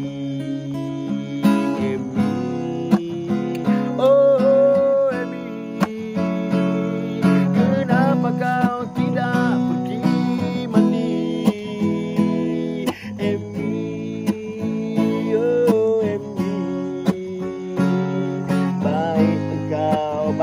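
Steel-string acoustic guitar strummed in steady chords, with a man's voice singing a drawn-out melody over it.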